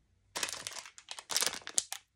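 A clear plastic packet holding a double fishing hook crinkling as it is picked up and handled. It is a quick run of crackles, starting about a third of a second in.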